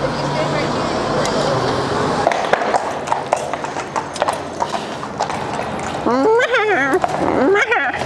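Shod hooves of several cavalry horses clip-clopping at a walk, irregular sharp clicks that grow more frequent from about two seconds in.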